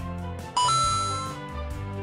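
Background music with a steady beat. About half a second in, a bright two-note chime sound effect rings out, the second note higher than the first, and fades within about a second.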